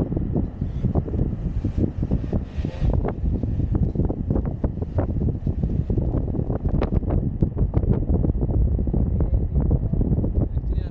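Wind buffeting an action camera's microphone: a loud, gusting low rumble with many small crackles and knocks through it.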